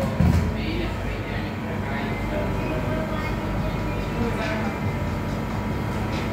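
A steady low mechanical hum, with a dull thump just after the start and faint voices now and then.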